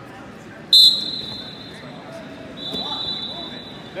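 Referee's whistle: a long, shrill blast about a second in, the loudest sound here, then a shorter, softer blast near three seconds, starting the wrestling from the referee's position.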